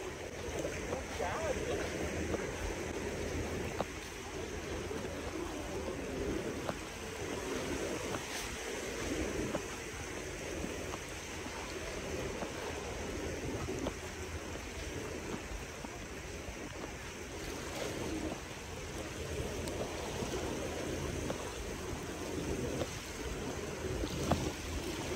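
Small Mediterranean waves breaking and washing up a sandy beach in a steady rush of surf, with faint voices of people in the background.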